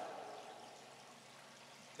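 A pause in speech: the reverberation of a man's voice dies away in a large church hall during the first half-second, leaving only faint, steady room hiss.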